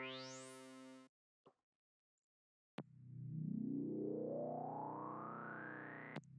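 Synth lead one-shot played, its brightness sweeping sharply upward before it cuts off about a second in. After a short silence the same lead sounds a long held note, its tone slowly rising and opening in a sweep.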